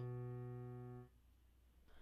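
A single low B on the piano, the last note of a left-hand bass line, held and slowly fading. It stops abruptly about a second in as the key is released, leaving near silence.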